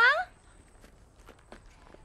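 A few faint footsteps after a spoken word with a rising pitch, heard in the first quarter-second.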